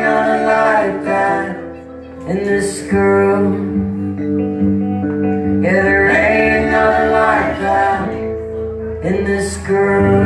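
Live rock band performance: a woman singing lead in phrases a second or two long, over guitar and steady held band chords.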